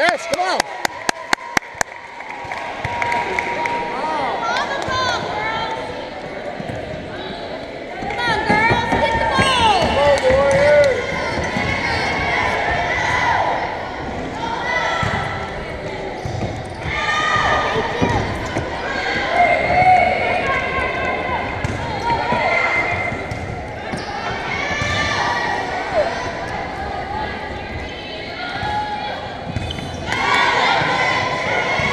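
A volleyball bounced on a hardwood gym floor about eight times in quick succession at the start, then the echo of a gym during a volleyball rally: players and spectators calling and shouting, with scattered ball hits.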